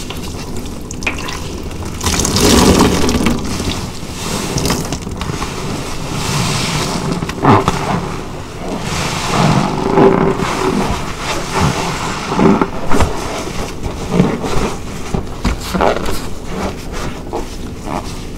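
A large car-wash sponge soaked in soapy water and foaming powder cleanser being squeezed by gloved hands: wet squelching and sloshing water through thick foam, in uneven bursts that are loudest a couple of seconds in and again through the middle.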